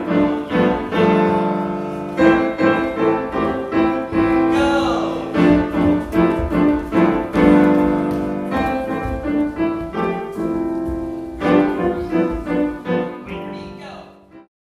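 Grand piano playing a lively accompaniment: quick groups of short struck notes broken up by chords held for about a second, fading away near the end.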